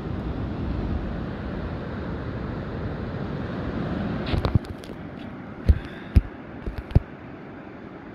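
Steady low rumble of wind on the phone's microphone and distant surf. About halfway it eases off, and a handful of sharp knocks follow from the phone being handled.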